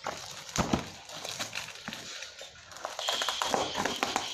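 Plastic parcel packaging and bubble wrap crinkling and crackling as a parcel is cut and pulled open by hand, with many sharp irregular clicks. A thin steady high tone joins in the last second.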